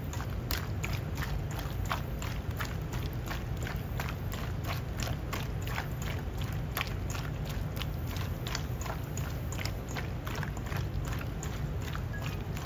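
A gloved hand kneading cubed pork belly in its seasoning in a stainless steel bowl: wet, squelching clicks and slaps of meat, several a second, over a steady low hum.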